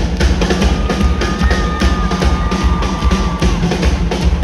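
Live drum-kit solo in a phone recording of a concert: a dense run of kick drum and snare hits. A thin, high held tone sounds over the drums for about two seconds in the middle.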